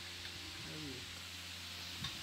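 Faint background voices over a steady low hum and hiss.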